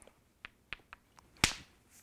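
A hammerstone striking a dacite core with one sharp crack about one and a half seconds in, knocking off a flake: hard hammer percussion flintknapping. A few faint clicks come before it.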